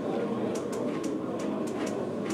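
Steady room noise of a talk venue with faint, indistinct voices in the background.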